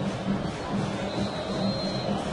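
Football stadium crowd noise, with a low drumbeat from the supporters repeating steadily about three times a second.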